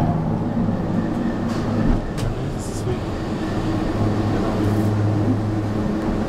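Steady low mechanical hum of the Ngong Ping 360 cable car's angle-station machinery heard from inside a gondola cabin as it is carried through the station, easing off briefly in the middle and then returning, with a couple of short clicks.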